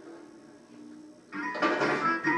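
Faint, quiet tones, then music comes in suddenly and loud about one and a half seconds in, with several notes sounding together.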